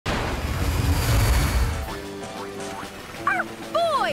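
Animated cartoon soundtrack: background music with a heavy low rumble for about the first two seconds, then two short cries that rise and fall in pitch near the end.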